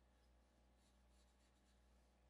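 Faint pencil strokes scratching on drawing paper, a quick run of them about a second in, over a low steady hum.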